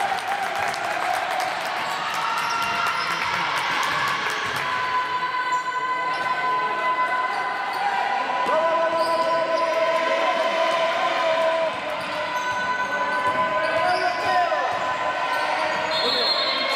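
A basketball being dribbled on a hard gym floor, with players' voices calling out across the hall.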